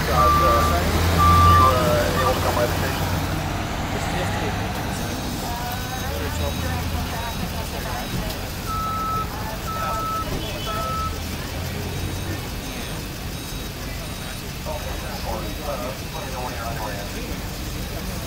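Tow truck's engine running with its reversing alarm beeping: a couple of beeps at the start and three more about nine seconds in, over a steady low engine hum and street voices.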